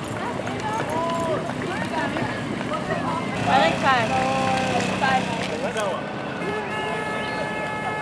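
Spectators' voices talking and calling out over one another, unintelligible, with a burst of quick rising and falling calls about three and a half seconds in. A steady, high held tone starts near the end.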